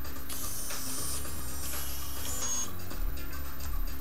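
Small motors of a 3D-printed bionic hand whining in two high-pitched stretches as the fingers curl closed, the second ending with a brief drop in pitch.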